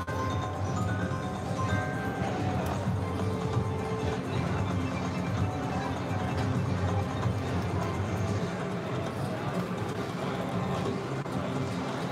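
Shadow of the Panther video slot machine playing its free-games bonus music, with held chiming tones as a win counts up.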